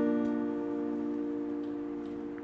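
Acoustic guitar's final strummed chord ringing out, slowly fading.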